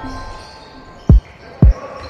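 A basketball bouncing twice on a wooden gym floor, two heavy thumps about half a second apart. Background music fades out at the start.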